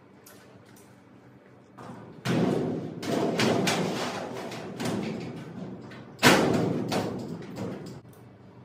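A run of knocks and thuds starting about two seconds in, with the loudest, sharpest bang about six seconds in.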